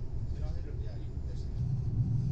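Finnish Intercity double-decker train running at speed, heard inside the carriage as a steady low rumble that grows stronger about one and a half seconds in.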